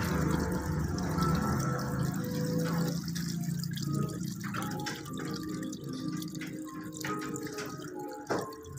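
Water dripping and splashing into a bucket as cardamom pods are scooped and washed by hand, fuller for the first few seconds.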